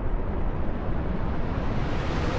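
Deep, steady rumble of a cinematic sound effect, with a hiss building in the high end near the end.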